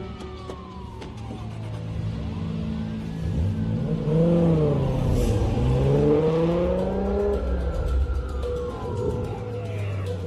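A Toyota Supra's straight-six revving hard as it accelerates away. It is loudest in the middle, with pitch rising and falling through the gears, then it fades. Police sirens wail up and down throughout.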